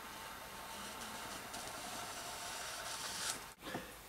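Faint, steady scratchy hiss of a Victorinox Hunter Pro pocket-knife blade slitting the plastic shrink wrap along the edge of an LP sleeve. It grows a little louder after a second or so and cuts off suddenly near the end.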